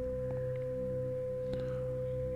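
Background meditation drone: a steady pure tone held without change over a few low sustained notes.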